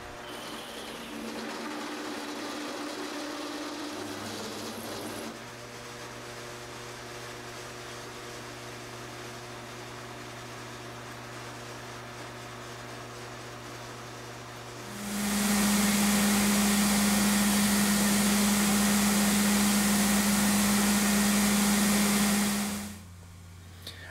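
Light benchtop drill press running, its stub-length drill cutting holes in an O1 tool-steel blank held in a milling vise, a steady motor hum. About fifteen seconds in, a much louder steady whirring hiss with a strong hum starts, runs for about eight seconds and stops shortly before the end.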